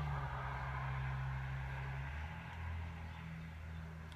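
A long, soft sniff, breathing in through the nose at a scented candle jar, lasting about two seconds and then fading. A low steady hum runs underneath.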